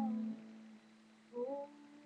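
A voice humming briefly, a short note that slides upward about a second and a half in. Under it, an acoustic guitar chord rings on and dies away.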